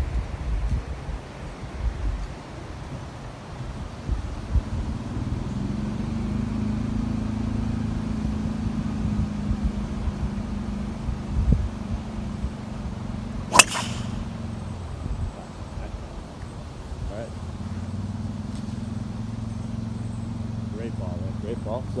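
A golf driver strikes a teed ball once, about two-thirds of the way through: a single sharp crack with a brief ring. Under it runs a steady low engine hum that breaks off briefly after the shot and then returns.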